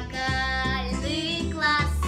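A young girl singing a jazz-style pop song, her voice gliding between held notes over instrumental backing with a steady bass line.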